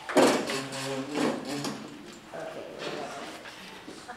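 Indistinct voices in the meeting room, loudest in the first second and a half and fading to fainter talk afterwards.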